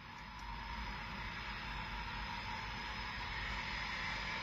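Twin jet engines of a distant Eurofighter Typhoon running as it taxis: a steady rushing noise with a thin high whine, slowly growing louder.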